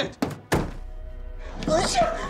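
A loud, sharp bang about half a second in, just after a fainter one, followed by a held, tense music drone; a man's shouting voice comes back near the end.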